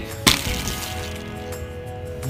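A sharp plastic click as a toy board game's cheese-shaped spinner is flicked by hand, about a quarter second in, followed by the spinner turning and coming to rest over faint background music with steady tones.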